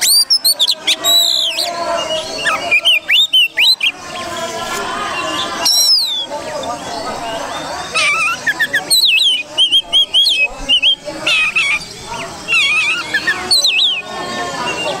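Oriental magpie-robin singing: loud, varied phrases of rising and falling whistles, quick trills and harsher notes, in bursts with short pauses between them.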